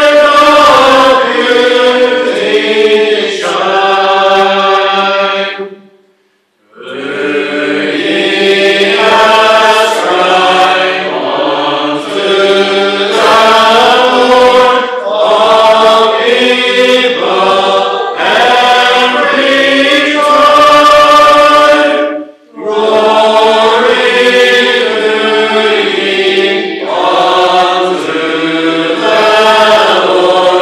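Congregation singing a psalm unaccompanied, in slow held notes without instruments. The singing breaks off briefly about six seconds in and dips again shortly after twenty-two seconds, as between sung lines.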